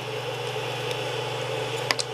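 Steady hum of a running Creality CR-10 3D printer's cooling fans, with one short click near the end.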